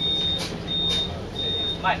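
A high-pitched electronic beeper sounding in regular pulses, three beeps of under half a second each, over the steady running of a Volvo Olympian double-decker bus.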